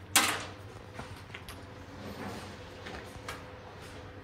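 Hand tools and small parts being handled in a car's engine bay: one sharp clack just after the start, then a few light clicks, over a steady low background hum.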